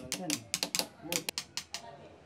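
Small jeweller's hammers tapping on metal at workbenches: about a dozen quick, light, irregular taps.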